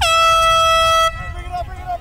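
A handheld air horn sounding one blast of about a second: a loud, steady, high tone that dips slightly in pitch as it starts and cuts off abruptly, followed by voices.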